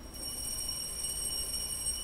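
A steady, high-pitched ringing made of several tones sounding together, held level without fading.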